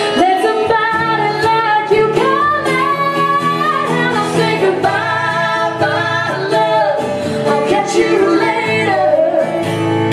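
A woman singing long held notes that bend in pitch, over strummed acoustic guitar, performed live.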